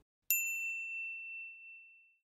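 A single high, bell-like ding struck once just after the start and ringing out, fading away over about a second and a half: a chime sound effect marking a section title card.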